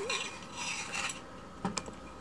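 Long metal chopsticks scraping faintly against a plate and steamer while lifting a steamed fish, with a couple of sharp clicks near the end.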